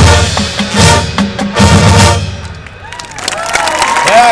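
Marching band's brass and drums playing loud closing chords with heavy bass-drum and timpani hits, ending about two seconds in and dying away. The crowd then starts cheering and yelling.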